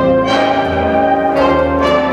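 Jazz big band playing sustained chords, trumpets, trombones and saxophones together, with bright chord attacks at the start and again about a second and a half in.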